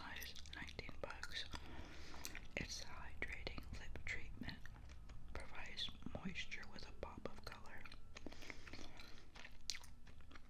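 Grape bubble gum being chewed close to a binaural microphone: a steady run of small wet smacks and clicks.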